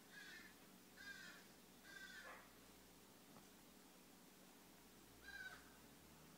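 Four short, faint, high-pitched vocal sounds from a young woman groggy from sedation after a tooth extraction, three close together in the first two and a half seconds and one near the end, against near silence.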